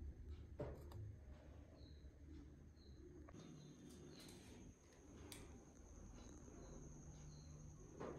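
Near silence: faint room tone with a few soft, short high chirps recurring about once a second and a couple of light clicks.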